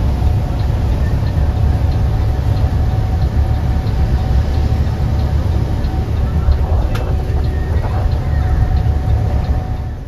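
Cabin noise inside a Haryanto coach on the highway: a steady low rumble of the engine and tyres on the wet road, with a faint regular ticking.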